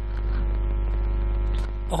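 Steady electrical mains hum picked up on the recording: a low drone with a ladder of steady higher tones above it. It grows a little louder shortly after the start and eases back near the end.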